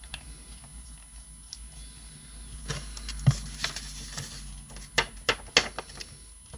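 A small plastic paint bottle and a sheet of paper being handled on a craft mat: scattered sharp clicks and taps, the loudest about halfway through and a quick cluster of them near the end.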